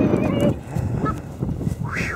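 Gull calls over wind noise: a held call that ends about half a second in, a short call near one second, and a sharp rising-then-falling call near the end.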